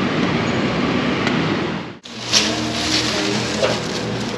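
Street traffic at a busy city intersection: a steady rush of vehicle noise. It cuts off suddenly about halfway through, and a steady low hum follows.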